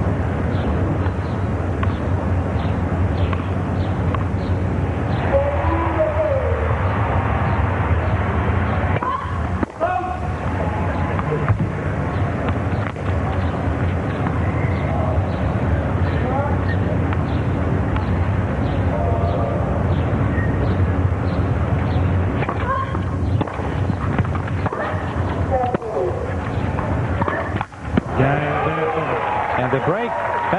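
Tennis stadium crowd murmuring between points, a steady mass of many overlapping talking voices.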